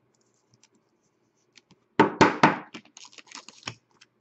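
Three sharp knocks of a hard plastic toploader holding a hockey card, tapped on the table in quick succession about halfway through. They are followed by crinkling of a soft plastic card sleeve and a few light clicks.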